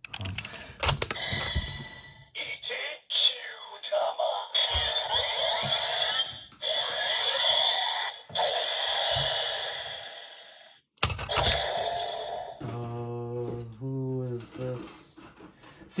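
Plastic clicks as a Kyutama is seated in a toy Seiza Blaster (dark Violent Emotion version), then the blaster's electronic sound effects play for about ten seconds and cut off suddenly. After another click comes a short, voice-like electronic call, which on this dark version is meant to sound raspy.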